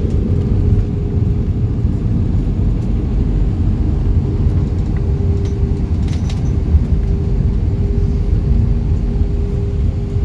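Cabin noise of a jet airliner taxiing on the ground: a steady low rumble from the engines and rolling gear, with a steady hum.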